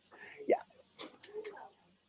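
A man speaking softly: a breathy, hesitant 'yeah' with a few faint clicks.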